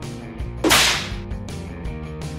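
A single quick whoosh sound effect about two-thirds of a second in, over background music.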